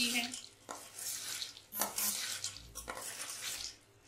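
A metal spoon stirring fried besan boondi through sugar syrup in a stainless steel bowl, in several strokes with short pauses between.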